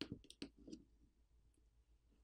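A few faint clicks and taps of a plastic pry card and fingertips against a phone battery and frame while the battery is pried loose from its adhesive, clustered in the first second.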